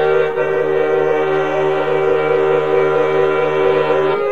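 Accordion playing a Bulgarian folk tune in sustained, reedy chords, the harmony shifting about a third of a second in and again right at the end.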